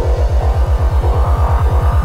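Electronic dance music from a psytrance DJ mix: a fast rolling bassline of even pulses, about nine a second, with a thin synth tone rising slowly high above it.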